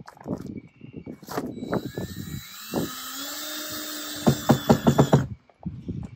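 A cordless drill drives a number six, three-quarter-inch stainless steel screw into a camper window frame. After some handling knocks, the motor whines steadily for a few seconds, rising a little in pitch, and ends in a quick run of clicks.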